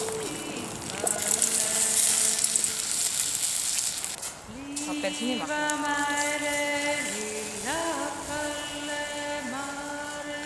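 Cranberries tipped into hot caramelized sugar in a steel bowl over a campfire sizzle loudly for about four seconds, then die down. A woman's folk singing with long held notes runs underneath and carries on alone in the second half.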